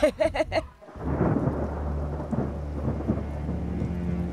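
A woman laughs briefly. Then from about a second in comes a storm sound effect: a steady low rumble of thunder with rain falling.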